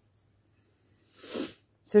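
A single short, noisy breath about a second in, after a second of near silence.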